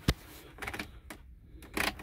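A few short, sharp clicks and light knocks of a hand at the van's dashboard heater controls, with a quick run of clicks near the end.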